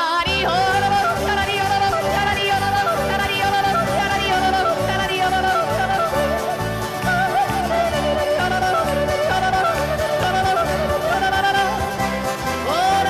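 Yodeling in a high, woman's voice, flipping quickly up and down in pitch, over band accompaniment with a steady bass beat.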